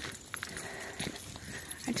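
Footsteps on a packed dirt forest trail, with a few soft, separate clicks.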